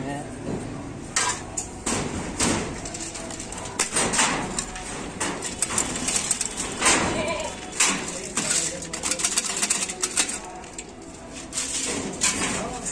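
Dry goat feed being handled and mixed in a plastic bucket: hands rustle through chickpea husk, and wheat grain is poured from a metal pan into the bucket with a rattling hiss. Scattered sharp clicks and knocks run throughout, the busiest stretch coming around the middle of the pour.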